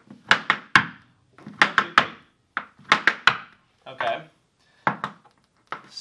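Irish dance hard shoes tapping on a portable wooden dance floor: sharp toe and heel strikes in quick groups of about three, a group roughly every second.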